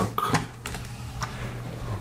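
A few short, sharp plastic clicks from a Logitech M705 wireless mouse being handled and clicked, spaced irregularly over the first second or so, with a low steady hum underneath.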